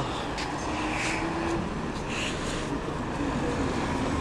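Steady rumble of KSRTC diesel buses moving about a bus stand, with one bus drawing close by the end.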